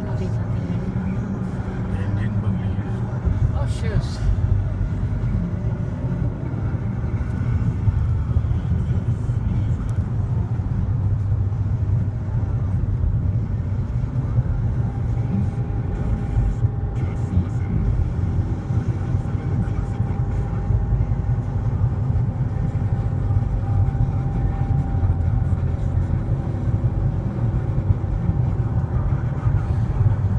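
Steady low road and engine rumble inside a car's cabin while it cruises at highway speed.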